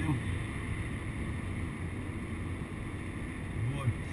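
Steady road noise heard inside a car cruising at highway speed: a low rumble of engine and tyres with an even hiss over it.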